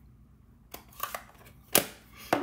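Plastic ink pad case being handled: a few light clicks and then a louder knock near the end, as it is closed and set down on a wooden desk.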